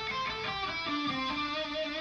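Gibson SG electric guitar playing a few single notes, each held and ringing into the next, a slow phrase from the A minor pentatonic scale in its first-position box shape.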